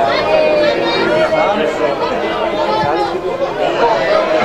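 Football crowd: many spectators' voices talking and shouting over one another at once.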